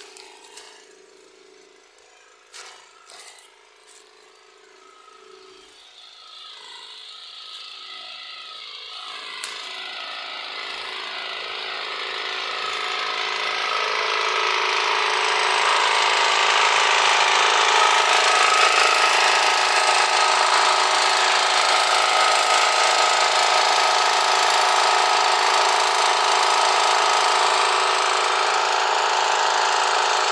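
Small portable generator engine running steadily. It is faint at first and grows louder over about ten seconds until it is loud and even.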